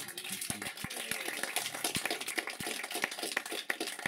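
Applause from a small audience: a dense, irregular patter of hand claps in a small room.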